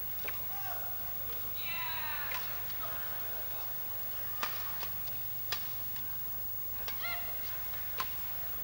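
A badminton rally: rackets strike the shuttlecock with sharp cracks about every one to two seconds, five in all, and court shoes squeak on the floor between shots. A steady low hum runs underneath.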